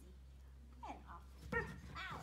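Border Collie whining in short falling whimpers, once about a second in and louder near the end.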